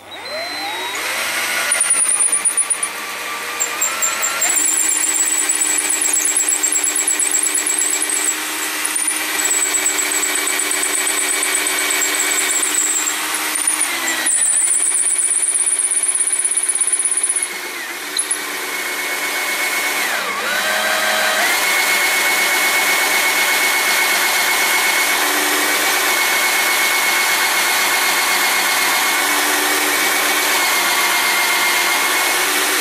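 Electric hand drill running a long, thin twist bit through wood to bore a hinge-pin hole, held under light pressure so the bit does not bend and wander. The motor speeds up at the start, slows and picks up again about halfway, and twice more around two-thirds of the way through, then runs steadily.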